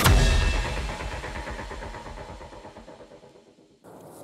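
Cinematic impact sound effect: a deep boom struck right at the start that rings on and fades away over about three and a half seconds, cut off shortly before the end.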